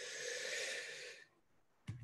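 A man's breath close to the microphone: one soft, hissy breath lasting about a second and a half, ending a little past the middle.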